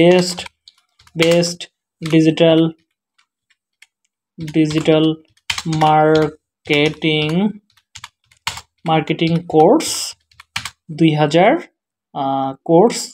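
Typing on a computer keyboard: short runs of key clicks, heard in the gaps between several brief stretches of a man's voice.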